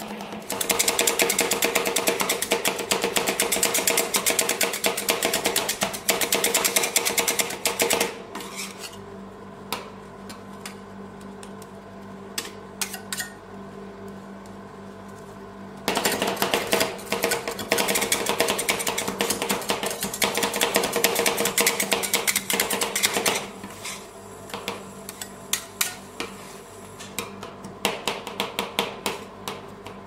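Two metal spatulas chopping pomegranate seeds on a stainless-steel rolled-ice-cream cold plate: a long, fast run of sharp metal clacks, a stretch of scattered slower taps, then a second fast run, then scattered taps again. A steady hum runs underneath.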